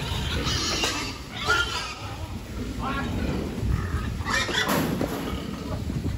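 Pigs being driven out of a concrete pen: short squeals and grunts over the shuffle of their trotters, with people calling out to them.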